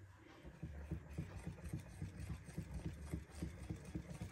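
Wire whisk beating a thick flour-and-milk batter in a glass bowl: soft, faint rhythmic strokes, about four a second, starting about half a second in.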